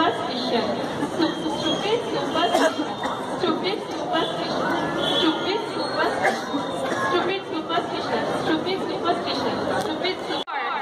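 Audience chatter: many people talking at once, a steady, overlapping murmur of voices with no single voice standing out.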